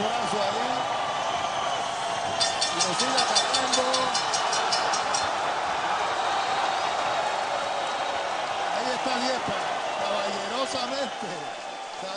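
Arena crowd cheering and shouting steadily. About two seconds in, the boxing ring bell is struck rapidly, about four strokes a second for roughly three seconds, signalling the end of the fight.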